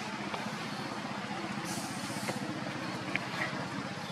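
Steady low rumble of a running engine, with a few faint clicks.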